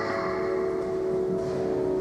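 Church music holding a steady sustained chord, with the notes changing to a new chord right at the start.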